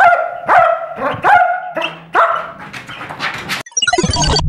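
Police sniffer dog barking about five times in quick succession, each bark short and pitched.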